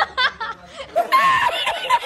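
A young man laughing in short bursts, then from about a second in a louder run of rapid, high-pitched laughter from an edited-in meme clip of a man laughing uncontrollably.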